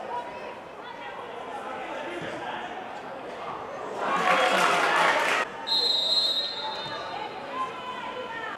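Players and spectators break into a short, loud burst of shouting and cheering as a goal goes in. It is followed by a referee's whistle blast of about half a second, with pitch-side shouts and chatter around it.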